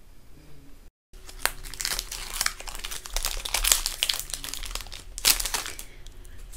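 Plastic packaging of a Pokémon trading card box crinkling as it is handled, in dense crackles lasting about four seconds. A short dropout to silence comes about a second in, just before the crinkling starts.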